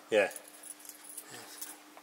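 Faint light metallic jingling of small metal items, over a steady low hum.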